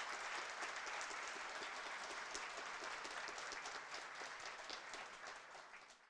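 Audience applause, many hands clapping steadily, then fading out near the end.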